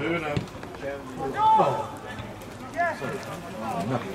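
Men's voices calling out in short shouts, the loudest about one and a half seconds in and another near three seconds, over a low murmur of background noise.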